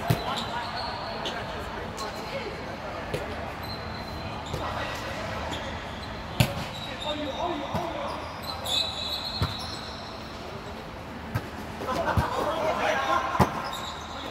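Volleyball being hit during a rally: sharp smacks of hands and arms on the ball every few seconds, echoing in a large hall, with players calling out and shoes squeaking on the court floor, busier near the end.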